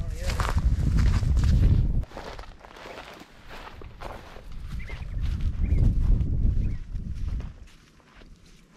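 Footsteps of people walking on a sandy track through dry grass, with wind buffeting the microphone in two stretches: through the first two seconds and again past the middle.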